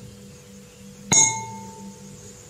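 A metal teaspoon clinks once against a hard surface about a second in, leaving a short, clear metallic ring that fades quickly.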